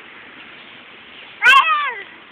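A young child's short, high-pitched vocal squeal that falls in pitch, about half a second long near the end, starting with a sharp click.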